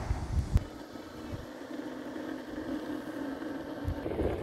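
Car running along a road: a low, steady road and engine noise with a faint hum, and a few gusts of wind on the microphone in the first half second.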